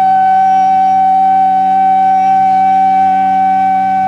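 Bansuri (Indian bamboo flute) holding one long, steady note in a Hindustani raga, over a constant low drone, from an old tape recording of a live performance.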